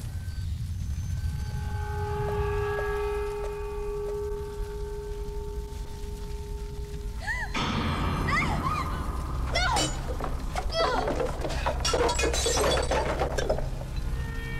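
Film soundtrack: a sustained dramatic music note holds for about the first half. It gives way to glass and objects shattering and crashing, a dense run of clattering impacts strongest in the second half.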